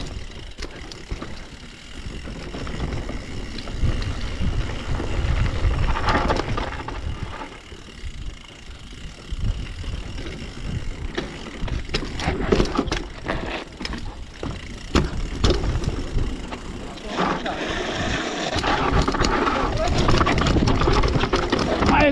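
Mountain bike ridden downhill over a rough trail: tyres rolling on dirt and rock, with the chain and frame clattering over bumps. It grows louder and busier over the rocky stretch near the end.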